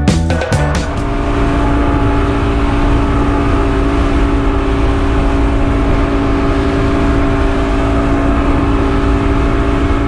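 A boat's engine running steadily while under way, a constant drone over the rush of wind and water. Background music fades out in the first second.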